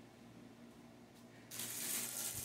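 Faint room tone, then about one and a half seconds in a sudden rise of plastic rustling as plastic items are handled.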